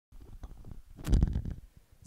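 Handling noise from a handheld microphone: irregular knocks and rustling, then a loud low thump about a second in, as the mic is moved about in the hand.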